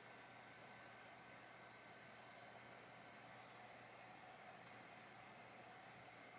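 Near silence: faint, steady room tone and hiss.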